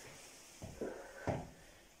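Faint knocks and shuffles of people moving on a tiled floor as they stretch their legs, three soft thumps in the second second.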